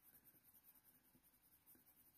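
Very faint scratching of a Polychromos coloured pencil lead on hot-press watercolour paper, worked in small circular strokes, barely above near silence.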